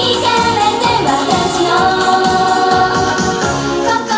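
Female idol group singing a J-pop song live into handheld microphones over backing music with a steady beat.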